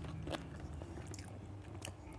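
Faint chewing and mouth sounds of a person eating rice and chicken curry by hand, with a few soft clicks spread through.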